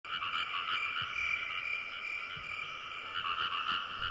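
A steady chorus of frogs croaking, many overlapping calls pulsing together.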